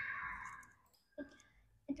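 A single short click just over a second in, from a computer mouse being clicked to change the picture on the screen, after a voice fades out.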